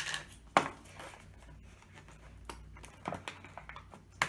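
Foil seal being peeled off a plastic candy tub by hand, with crinkling and a few sharp clicks and snaps, the loudest about half a second in.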